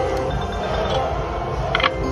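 Reel slot machine's electronic spin tune, a run of held chime-like tones, over a low casino din, with a short, brighter chime near the end as the reels come to a stop.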